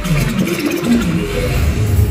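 Live dubstep DJ set played loud over a venue sound system and recorded on a phone. The deep bass drops out for about a second while a wobbling, pitch-bending synth sound plays, then the bass comes back in.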